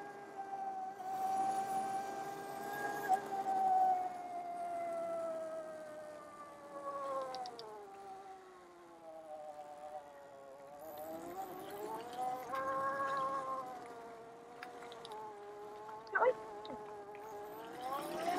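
Electric motor whine of an Oset 24R electric trials bike. The pitch slowly falls as the bike slows, then climbs again as it speeds back up, with a few light knocks from the bike.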